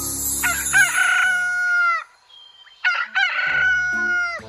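A rooster crowing twice, cock-a-doodle-doo. Each crow is a few quick notes followed by a long held note that drops away at the end.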